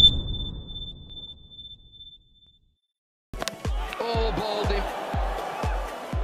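The tail of a booming transition sound effect dies away with a thin, high ringing tone, then there is about a second of silence. Music with a steady beat of about two low thumps a second starts just after three seconds in.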